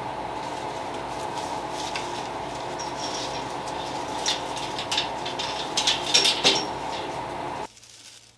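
Steady machine hum, with light rustles and clicks from about three seconds in as garlic stalks are handled and pushed through a metal wire shelf; the sound cuts off suddenly near the end.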